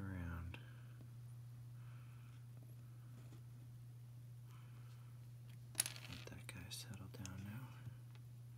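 Faint handling noise as glue is worked under a small speaker's foam surround: a single sharp click about six seconds in, then soft rustling with low whispered muttering, over a steady low hum.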